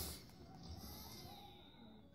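Very quiet room tone with a faint low hum.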